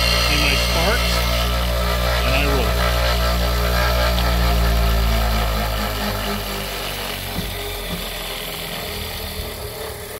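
Black & Decker bench grinder running with a steady motor hum while a steel bowl gouge is ground on its wheel at the start. About five to six seconds in, the hum fades away as the motor winds down.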